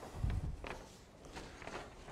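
Footsteps of a person walking: a heavier low thump shortly after the start, then a few lighter, separate steps.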